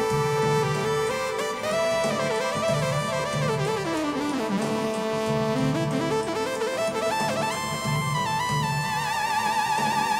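Synthesizer lead played on a Roland Fantom 7 keyboard: a single melodic line that slides down in pitch and back up in the middle and wavers with vibrato near the end. It plays over a rhythmic backing part from a Korg Kronos workstation.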